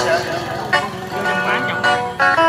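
A man singing a slow Vietnamese bolero live to his own electric guitar accompaniment, the voice gliding and wavering between held guitar notes.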